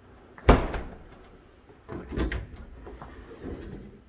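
A refrigerator door is shut with one loud knock about half a second in. A few softer clunks follow around two seconds in as a pantry door is opened.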